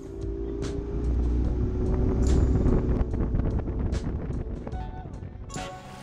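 Bass boat's outboard motor running underway: a low rumble that builds and then eases off near the end. Background music plays over it.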